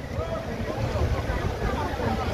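Downtown street ambience: a steady low traffic rumble with wind on the microphone and faint voices of passers-by.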